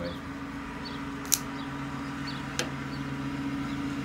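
Revo folding knife being opened: a sharp click about a third of the way in as the blade snaps out, and a fainter click a second or so later. A steady low hum runs underneath.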